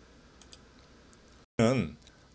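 A couple of faint, short clicks over quiet room tone, like a computer mouse being clicked as a presentation slide is advanced. A short spoken syllable from the man comes near the end.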